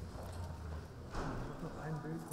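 Courtroom room sound: indistinct murmuring voices with footsteps and shuffling as a person is led to a seat, with a louder rustle a little after one second in.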